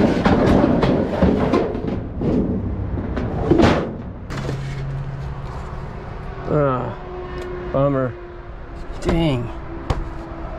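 Clatter and scraping of junk being handled, with several sharp knocks: a metal bucket set down, then framed mirrors and pictures shifted and pulled from a pile. It is busiest in the first four seconds, after which the handling is quieter, with a few short pitched sounds.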